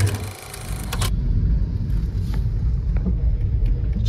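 A car's low, steady road and engine rumble heard from inside the cabin, after about a second of crackly noise at the start.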